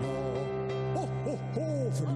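Yamaha digital keyboard playing a held low note under short tones that swoop up and then down in pitch, three of them in the second half.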